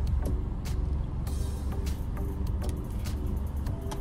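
Car engine idling, heard from inside the cabin as a steady low rumble, with a few light clicks.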